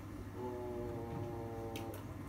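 A man's voice holding one steady, drawn-out vowel for about a second and a half, a hesitation sound in mid-sentence, ending in a short hiss as the next word begins.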